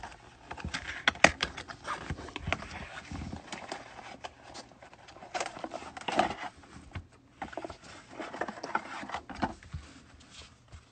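Hands opening a small cardboard box of trading cards: irregular clicks, creases and scraping rustles as the flaps are worked open and the stack of cards is slid out, then the cards set down on a mat near the end.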